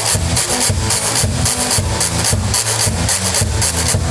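Acoustic guitar playing with a washboard scraped in a fast, even rhythm of about four strokes a second.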